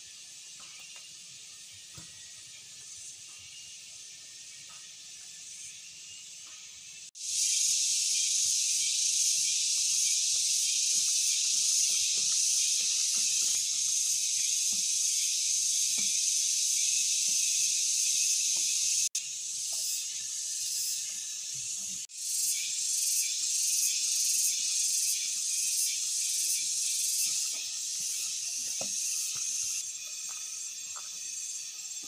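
Tropical forest cicadas making a steady, high-pitched buzzing drone. It is fainter at first, turns loud suddenly at about seven seconds, and from about twenty-two seconds on it pulses quickly in its highest part.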